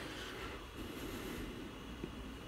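Faint, steady hum and hiss of a computer's cooling fan running: background room noise with no other event.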